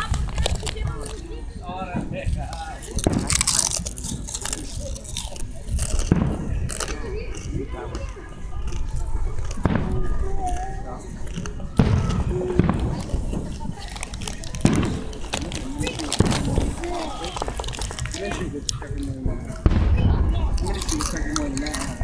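People talking indistinctly, with sharp bangs from aerial fireworks every few seconds.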